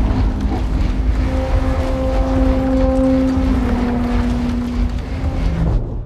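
Sci-fi sound design of a giant spice harvester: a loud, deep mechanical rumble with a steady droning tone over it, which drops slightly in pitch past the middle and fades near the end.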